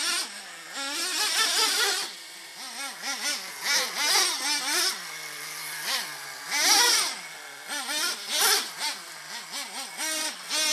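Traxxas Jato 3.3 nitro RC truck's small two-stroke glow engine revving up and down over and over as it drives, its pitch rising and falling in quick surges. The loudest surge comes near seven seconds in.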